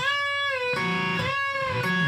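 Electric guitar playing a unison bend with the bent string left ringing: a note bent up to pitch sustains while the same note on the next string is played under it, so the two sound together. This is the clash that muting the bend with the picking hand is meant to prevent. A fresh bent note is picked about a second and a half in.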